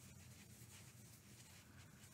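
Near silence: a low steady hum with faint rustling of yarn and a crochet hook as single crochet stitches are worked.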